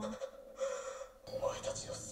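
The end of a man's falling 'oh', then anime dialogue from the episode playing: a man's breathy, strained voice speaking Japanese in two short gasping phrases.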